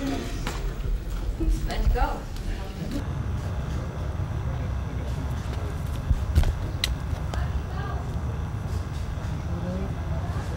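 Indistinct murmur of voices over a steady low rumble, with a few sharp clicks about six to seven seconds in.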